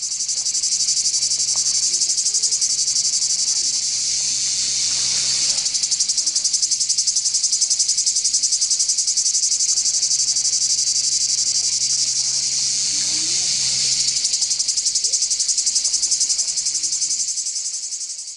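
A loud, steady, high-pitched insect chorus with a fast pulsing trill.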